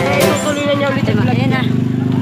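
A motorcycle engine running steadily close by, with people talking over it; music with a beat cuts off about half a second in.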